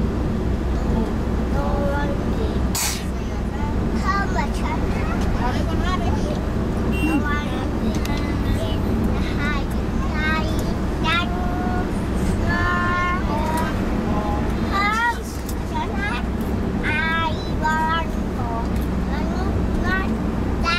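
A young girl's high voice singing in the cabin of a moving minibus, over the steady low drone of engine and road. A single sharp knock sounds about three seconds in.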